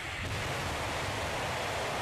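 Hwasong-15 missile's rocket engine at launch: a steady, loud rushing noise with no distinct pitch.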